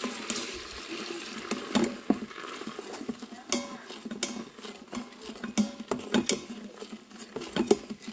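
Spatula scraping and tapping against the stainless-steel inner pot of an Instant Pot while spices are stirred into melted butter and olive oil: an irregular string of scrapes and clicks, with a light sizzle in the first second.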